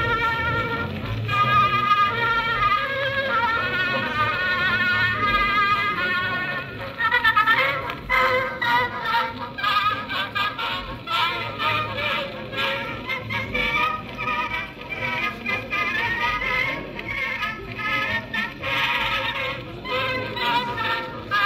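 An Edison Gem phonograph playing a 124-year-old wax cylinder through its horn: an early acoustic recording of music, thin and narrow in range with no high treble.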